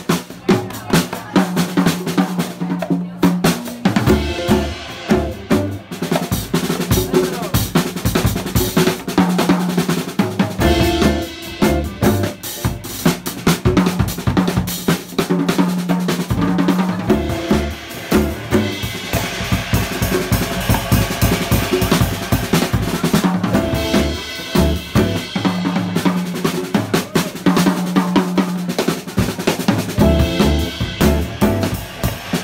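Live drum kit played busily, with rapid snare, rimshot and bass-drum strokes and cymbal wash, accompanied by an upright double bass sounding held low notes.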